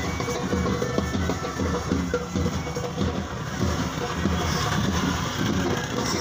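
Music with drums and a steady beat.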